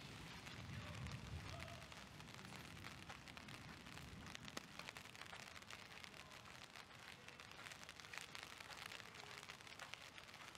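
Rain falling steadily, heard as a faint, even hiss dotted with many small drop ticks, with a low rumble in the first second or two.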